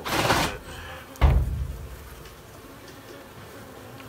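A brief scraping noise, then a single heavy thump about a second in, from gloved hands working on the opened wooden floor joists.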